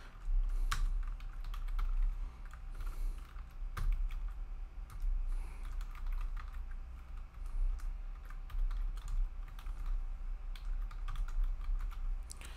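Computer keyboard typing: irregular runs of short key clicks as code is typed, over a steady low electrical hum.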